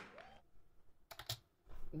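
A quick cluster of three or four computer keyboard clicks just over a second in, in a mostly quiet room.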